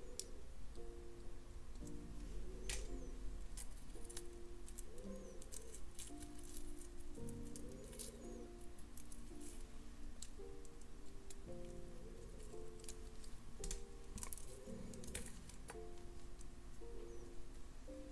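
Soft background music of slow, held notes changing every second or so. Scattered faint sharp clicks come from small metal jewelry findings being handled.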